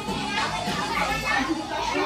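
Children's voices shouting and chattering excitedly, with music playing underneath.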